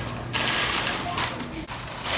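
Metal wire shopping cart, loaded with bags, rattling and clattering as it is pushed along on its casters.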